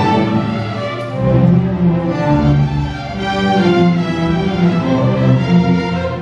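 String orchestra playing a sustained passage, violins over a strong low line of cellos and basses, with the notes changing every half second or so.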